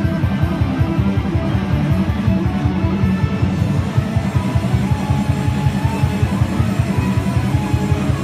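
Loud amplified electric guitar played live over a backing track, heavy rock-style music with a fast, driving low-end beat.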